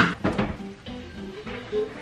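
Background music with a light plucked-string melody. A sharp clatter comes right at the start, with a few quick strokes after it.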